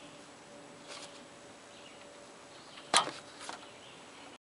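A sharp click about three seconds in, followed by a few lighter clicks: an A/C manifold hose's quick coupler being released and pulled off the car's A/C service port. A faint click about a second in comes as the coupler is handled.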